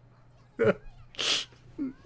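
A man's stifled laughter: a short voiced burst about half a second in, then a loud, sharp breath forced out through the hand over his mouth, and a brief low voiced sound near the end.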